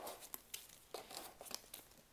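Hockey card packs handled and lifted out of a metal tin: faint, scattered light clicks and rustle.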